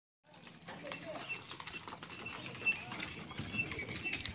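Bullocks walking on a dirt road, hooves clopping irregularly, with a short high chirp repeating throughout and low voices in the background. The sound starts suddenly just after the beginning.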